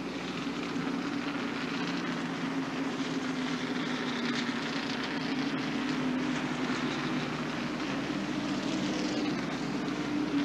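Distant engines of NASCAR stock cars circulating at caution speed, a steady drone that wavers in pitch, over a continuous hiss of rain.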